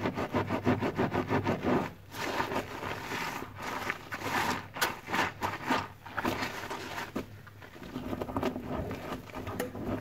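Wet luffa sponges being squeezed and scrubbed in soapy water by rubber-gloved hands, squelching and sloshing through the suds. Quick, rhythmic squeezes come for the first two seconds, then slower, uneven ones.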